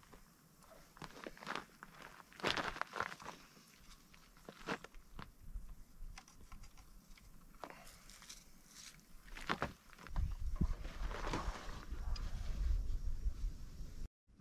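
Scattered clicks, rustles and footsteps on a dirt and gravel track as a recurve bow is unstrung with a bow stringer and laid down. A low rumble joins in over the last few seconds.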